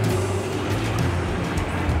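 Steady low rumble of street traffic, with music playing along with it.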